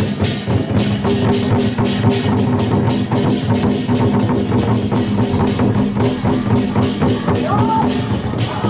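A troupe of Chinese barrel drums beaten with sticks in a fast, even rhythm of about five or six hits a second, with a steady low tone sounding underneath.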